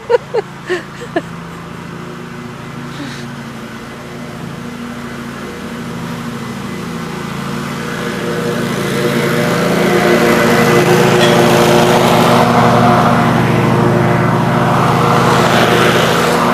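An engine drawing near at an even pace. It gets steadily louder from about six seconds in and runs close by at a steady speed for the last few seconds.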